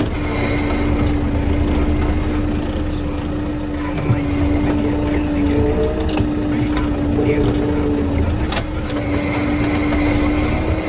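John Deere tractor engine running steadily, heard from inside the cab, with a steady droning hum over a low rumble while the front loader works a wrapped silage bale. A few light knocks come through.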